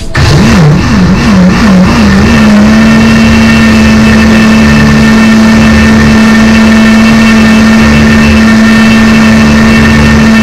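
Countertop electric blender switching on and running, churning grated coconut for a second pressing of coconut milk. Its motor pitch wavers up and down for the first two seconds or so as the load settles, then holds a steady, loud hum.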